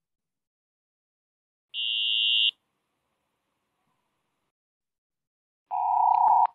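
Image-to-sound tones from The vOICe sensory-substitution system: a steady high-pitched tone lasting under a second, standing for a horizontal line high in the image. Near the end comes a steady, clearly lower tone standing for a horizontal line lower down.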